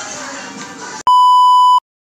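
A single loud electronic beep, one steady high-pitched tone, cuts in about a second in and stops abruptly after under a second. Before it, music and voices play.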